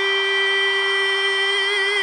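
A singer holding one long, high sung note at a steady pitch, with vibrato coming in near the end, during a live duet.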